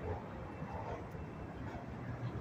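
Steady low outdoor background noise with a faint low hum that comes up in the second half.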